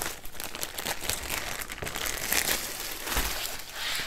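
Clear plastic bag crinkling as a rolled canvas is slid out of it, a steady stream of fine crackles, with a couple of soft low bumps near the end.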